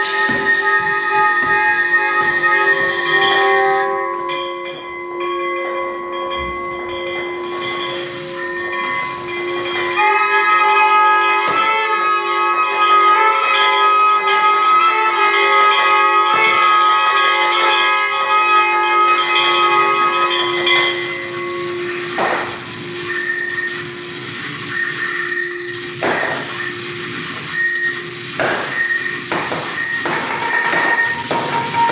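Freely improvised music: a sustained, layered drone of steady tones from guitar and electronics, thinning about four seconds in and swelling again about ten seconds in. In the last third the drone fades back and a few sharp percussion knocks sound.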